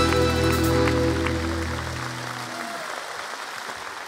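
Live band of accordion, guitars, piano and drums holding a final chord that cuts off about two seconds in and rings away over the next second, with applause underneath.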